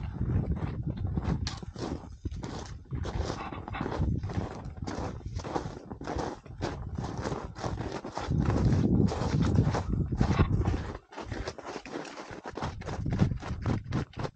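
Footsteps crunching in snow, a steady rhythm of about two to three steps a second, with gusts of wind on the microphone.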